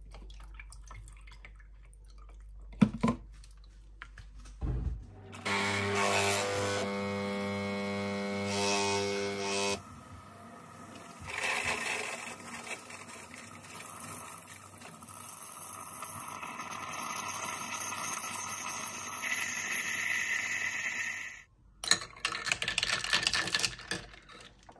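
Tassimo pod coffee machine brewing: its pump buzzes loudly for about four seconds, then coffee streams with a hiss into a glass of juice and ice for about eleven seconds before cutting off suddenly. A few sharp glass clinks follow near the end as the drink is stirred.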